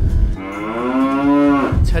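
A cow mooing once, a single long call lasting a little over a second that rises slightly in pitch and drops away at the end.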